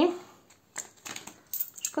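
Two-złoty coins clicking lightly against each other as they are gathered up and handled in the hand; a few small, separate clicks in the second half.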